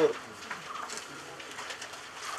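A dove cooing faintly in the background, after a spoken name ends.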